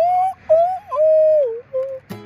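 A person whistling a short melody of four notes, the third held longest and sliding down at its end; the acoustic guitar is silent under it.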